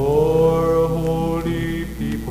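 A man singing one long held note that slides up into pitch at the start, over acoustic guitar accompaniment, on a 1960s folk worship recording.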